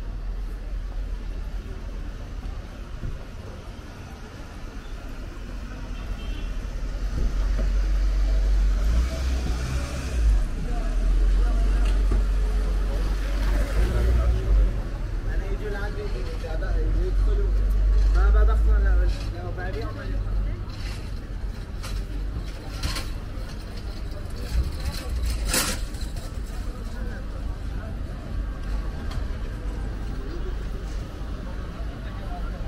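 Busy street ambience: passers-by talking and a low traffic rumble that swells through the middle and drops off about two-thirds of the way through. Scattered clicks and knocks, one sharp clack about 25 seconds in.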